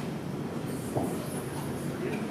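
Steady low rumbling room noise in a large hall, with a small knock about a second in.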